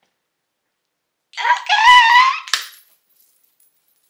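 A short, high-pitched vocal squeal of excitement starting about a second in and lasting about a second and a half, with a sharp click near its end.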